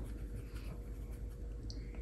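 Faint soft scrubbing and scraping of a paintbrush mixing gouache in the palette, over a steady low hum.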